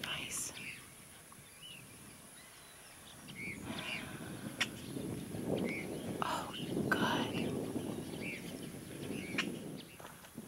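Birds chirping: scattered short, arching calls, several each second at times, over a low outdoor murmur that grows louder after a few seconds.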